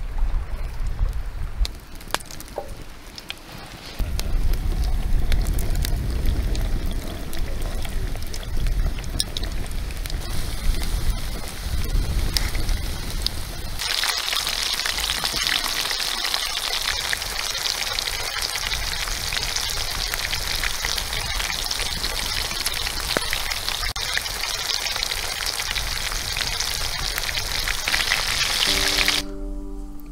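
Campfire crackling, then battered pike fillets frying in hot oil in a pan over the fire: a steady, loud sizzle from about halfway in. Music comes in right at the end.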